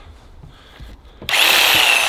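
Angle grinder switched on about a second in, running at full speed with a loud high whine.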